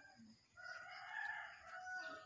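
A rooster crowing faintly: one long crow that starts about half a second in and drops in pitch at its end.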